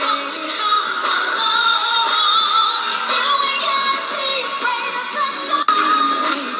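Pop music with women's voices singing live over a backing track. The sound is thin, with no bass, and there is a brief dropout shortly before the end.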